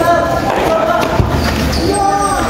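Volleyball players shouting during a rally, with dull thuds from the ball and from feet on the court.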